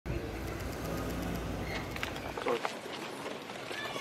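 Low rumble of street traffic and car engines that cuts off about two and a half seconds in, followed by faint voices and a few light clicks.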